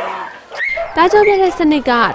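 Burmese narration over dogs whining and yipping; the voice comes in strongly about a second in.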